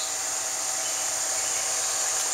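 Steady outdoor background hiss with a thin high tone held on top of it.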